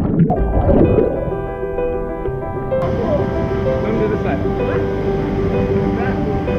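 Background music of held notes over the rush of water; the water sound is muffled at first while the camera is underwater, then brightens about halfway through as it comes back up beside the falling water.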